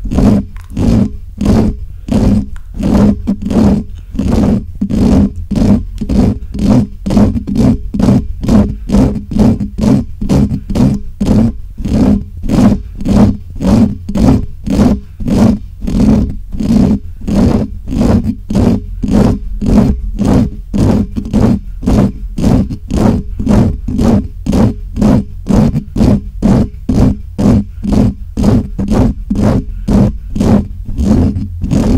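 Fast, rhythmic close-mic scratching and rubbing of fingers on a Blue Yeti microphone's metal mesh grille, about two strokes a second, over a steady low rumble from handling the mic.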